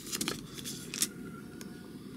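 Handling noise of a steel bulb planter in its plastic packaging being lifted out of a wicker basket: light rustling with a few clicks, the sharpest about a second in.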